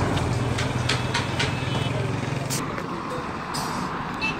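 Street traffic: a vehicle engine hums close by and fades out about two and a half seconds in, over a steady bed of street noise with a few short clicks.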